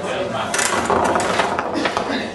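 Ping pong balls dropping from a feeder tube and clattering through a foam-board ball-sorting rig, a run of light clicks about half a second in and again in the second half, over voices in the room.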